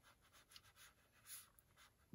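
Near silence, with faint soft scratching of a watercolour brush dabbing paint onto sketchbook paper, a few light strokes with one slightly louder just past halfway.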